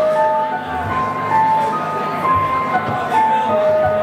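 Roland V-Piano digital piano played solo: a slow melody of held notes moving step by step over low sustained chords.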